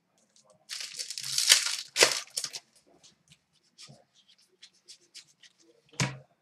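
A foil hockey card pack (Upper Deck Series 1) being torn open: about two seconds of tearing and crinkling wrapper, followed by faint light ticks and rustles as the cards are handled.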